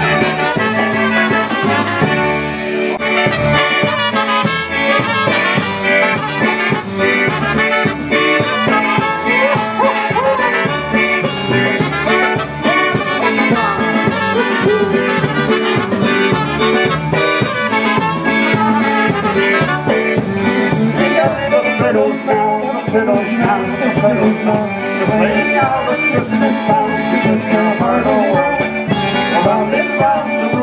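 Live polka band playing an instrumental passage: a concertina and a piano accordion carry the tune over drums with a steady, even dance beat.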